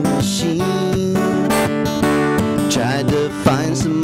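Strummed acoustic guitar with a man singing a folk song.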